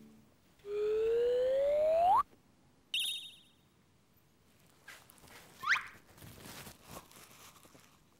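Comic sound effects added in editing: a rising whistle-like glide that lasts about a second and a half and stops suddenly, a short bright sparkle chime about three seconds in, and a quick rising chirp near six seconds. Faint light rustling follows.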